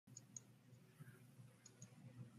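Near silence: faint room tone with four faint, short high clicks, two close together early on and two more near the end.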